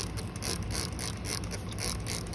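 Plastic trigger spray bottle squirting water onto pavement in quick repeated pulls, about four or five hissing sprays a second.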